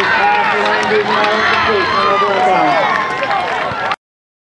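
Many voices of players and spectators shouting and cheering over one another in a dense clamor, cut off abruptly just before the end.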